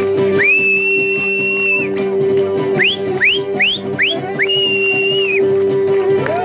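Loud human whistles over live folk dance music. First a long whistle that swoops up and holds, then four quick upward-swooping whistles, then another long held whistle, the whistling of onlookers egging on the dancers. Underneath, the band keeps playing with a steady held note.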